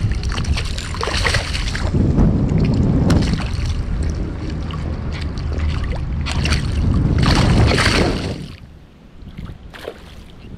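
Wind buffeting the microphone, mixed with water splashing as a hooked little black drum thrashes at the surface and hands reach into the water for it. The wind rumble drops off near the end.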